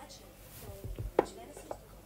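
Handling noise: a few light knocks and rubs as a framed award plaque is moved about close to the phone, with one sharp click a little after a second in.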